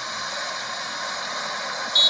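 Steady hiss of a car's idling engine and cabin, heard through a phone's speaker, ending in a single short, sharp crack.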